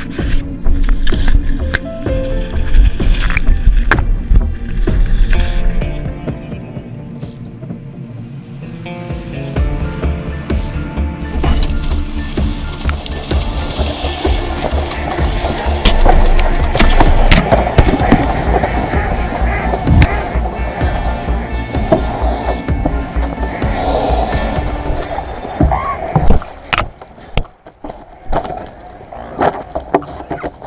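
Background music over splashing water and scuffling knocks, the noise of a swan being seized in the water and held on a wooden jetty. The splashing and knocking build about a third of the way in and die away near the end.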